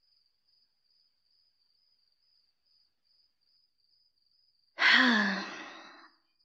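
Faint, steady cricket chirping in the background ambience. About five seconds in, a woman lets out a loud, breathy sigh that falls in pitch and fades away over about a second.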